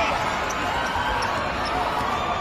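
Basketball game in an indoor arena: steady crowd chatter, with a basketball bouncing on the court.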